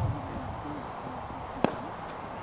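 A single sharp crack of a cricket bat striking the ball, heard about one and a half seconds in across the field.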